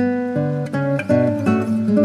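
Instrumental acoustic guitar music: a slow fingerpicked melody, with a new note or chord plucked roughly every third of a second over ringing lower notes.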